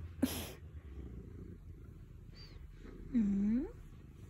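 Domestic cat purring steadily while its head is stroked. Just after the start there is a brief rustle, and near the end a short, low, hum-like sound that dips and then rises in pitch.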